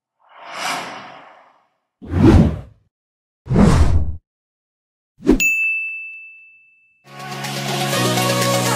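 Logo-intro sound effects: a soft whoosh, two short swooshing hits, then a bright ding whose single high tone rings on for under two seconds. Electronic music starts about seven seconds in.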